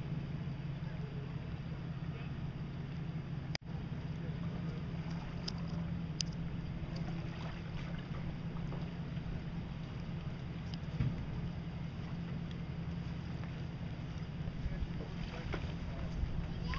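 Bass boat outboard motors running at low speed as the boats come in to the dock, a steady low drone. The sound cuts out for an instant about three and a half seconds in.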